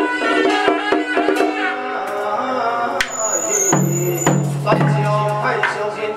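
Traditional Taoist ritual music: a pitched melody over regular sharp percussion strikes. Partway through, a man's low chant comes in, held on one pitch.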